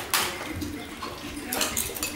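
Tableware being handled: a knock at the start, then a few light clinks near the end.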